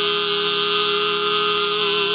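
Recorded male voices of a singing-skeleton show holding one long final chord, several notes sustained steadily without any change in pitch.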